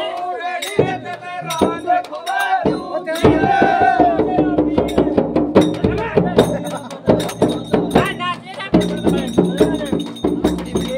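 Men singing a Holi dhamal song together over a large hand-beaten chang frame drum and jingling percussion. The drumming grows dense and steady about three seconds in.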